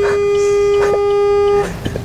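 Car horn held in one long, steady blast, cutting off about a second and a half in.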